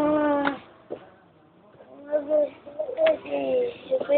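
A young child fussing with wordless, whiny vocal moans: one held moan at the start, then a few short ones in the second half.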